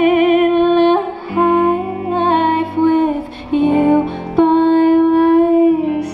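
A woman singing long held notes with vibrato in a slow, gentle folk song, over strummed acoustic guitar and electric guitar. The sung line moves to a new note about every second.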